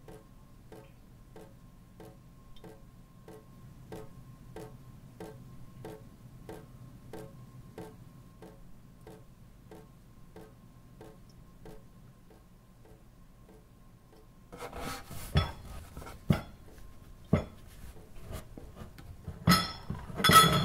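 A clock ticking quietly, about twice a second, over a faint steady high tone. About three-quarters in the ticking gives way to dishes being handled: a few knocks and clinks of crockery with rubbing and scraping.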